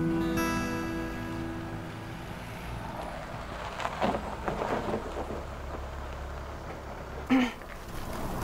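The last notes of guitar background music ring out and fade over the first couple of seconds. Under them runs a low steady rumble of a car driving up the street, and a short louder sound comes near the end.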